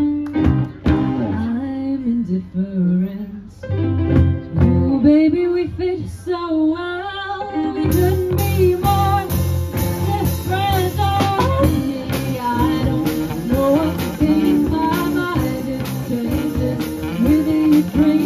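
Live rock band with a woman singing lead over electric guitar, bass guitar and drums. About eight seconds in, cymbals come in and the band plays fuller.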